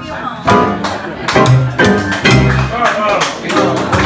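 Live music: an upright double bass sounding low notes under a woman's voice, with sharp percussive taps recurring through it.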